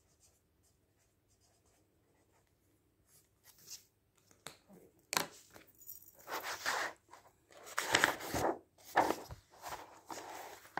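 Glossy paper magazine being handled: hands slide over the cover, then the magazine is lifted and opened, its pages rustling and crackling in several spells. The loudest spell comes about eight seconds in, after a nearly silent start.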